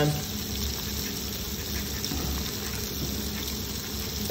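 Mackerel fillets sizzling steadily in a frying pan on medium-high heat, under a steady low hum.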